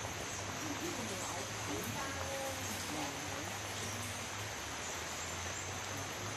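Faint, distant voices talking over a steady background hiss and low hum.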